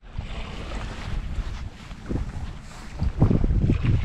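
Gusty wind buffeting the camera microphone, with the wash of choppy water behind it.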